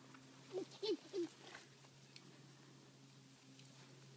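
Three short, faint calls from a farm animal about a second in, each dropping in pitch.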